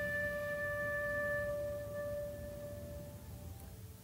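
Soundtrack music: one long held woodwind note that slowly fades away, dying out near the end.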